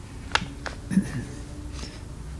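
Two sharp mouth clicks about a third of a second apart, then a brief low throat sound, over quiet room hum.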